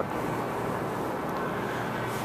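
Steady city background noise: an even rush with a low hum underneath and no distinct events.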